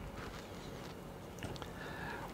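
Faint, soft squishing of raw bacon being wrapped by hand around a raw chicken breast, over a low steady hum.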